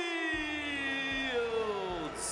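Boxing ring announcer's voice drawing out the last syllable of the winner's name, "Shields", in one long held call that slides slowly down in pitch and ends just before two seconds in. A low rumble joins underneath about a third of a second in.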